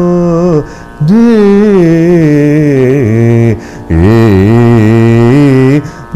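A man singing Carnatic phrases in raga Kalyani in which nearly every note oscillates with gamakas. There are three sung phrases, with short breaks about a second in and near the middle.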